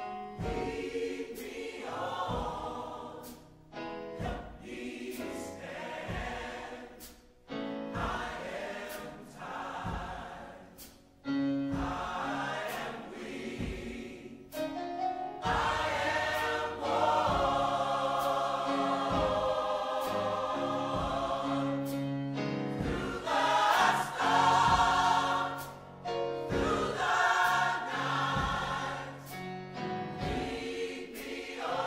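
Choral music: a choir singing long held phrases, growing fuller and louder about halfway through.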